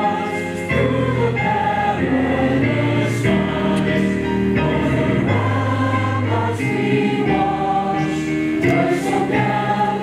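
A choir singing a slow piece in long held chords that change every second or so.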